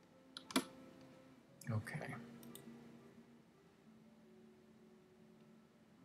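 A single sharp click at the computer about half a second in, followed a couple of seconds later by two or three faint clicks.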